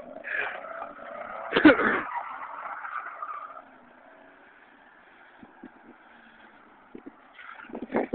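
Nissan 300ZX's V6 engine running and revving as the car slides around on snow, with one loud burst about one and a half seconds in. The sound fades after about three and a half seconds and picks up again near the end as the car comes close.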